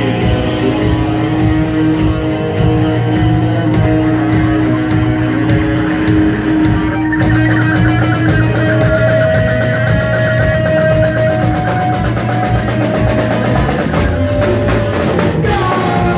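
Live rock band playing loud: distorted electric guitars, bass guitar and a drum kit, with long held guitar notes from about seven seconds in.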